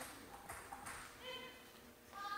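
Faint sounds on a table tennis court between points: a few light clicks of a celluloid table tennis ball in the first second, then a brief high squeak, like a shoe sole on the court floor, a little past halfway.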